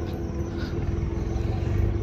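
Steady low rumble and hum of a running motor, growing slightly louder near the end.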